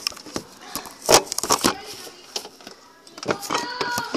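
Handling noise of a phone camera being set in place inside a fridge: a series of sharp knocks and clatters, the loudest about a second in, with a cluster of faster clicks shortly after and more near the end.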